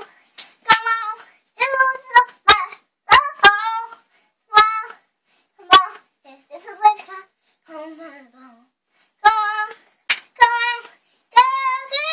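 A young girl singing unaccompanied in short, high-pitched phrases with held notes and pauses between them. A few sharp clicks fall between the phrases.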